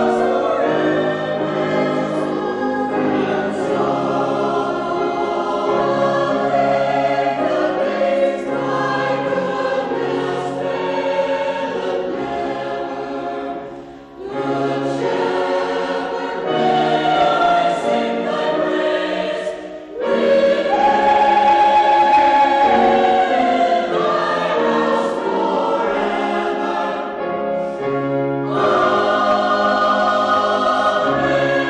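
Church choir of men's and women's voices singing in parts, the phrases breaking off briefly about 14 and 20 seconds in.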